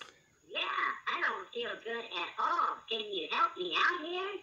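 A voice message altered by a smartwatch voice changer, played back through a small device speaker: an oddly pitched, processed voice speaking a short sentence in several quick phrases, starting about half a second in.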